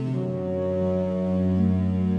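Background music of slow, held low chords, changing chord at the start and again about half a second in.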